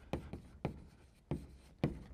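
Chalk writing on a blackboard: a handful of sharp, irregularly spaced taps and short scrapes as the lecturer writes.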